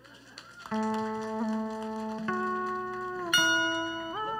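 Electronic keyboard playing the slow opening of a cải lương piece: sustained held notes begin about a second in, the chord shifts twice, and a brighter high note comes in near the end.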